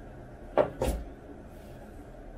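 Two quick thumps close together, a little over half a second in, as the fleece sweat shorts are flapped out and set down on a desk.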